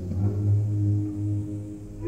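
Opera orchestra holding low, sustained notes, with a deep bass note the loudest part.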